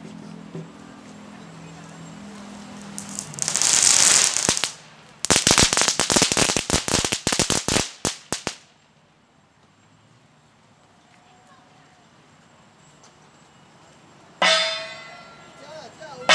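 A loud hiss, then a string of firecrackers popping rapidly for about three seconds. Near the end a crash of large brass hand cymbals rings on.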